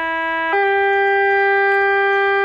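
Radiodetection Tx-10 utility-locating transmitter's steady buzzing tone, stepping up to a higher pitch about half a second in as its output is turned down to 5 milliamps.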